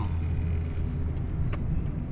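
Steady low rumble of engine and road noise inside a moving car's cabin, with one faint click about one and a half seconds in.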